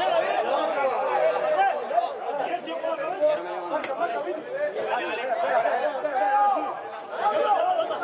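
Several men's voices shouting and talking over one another, the overlapping calls of players and onlookers at an outdoor football pitch after a foul.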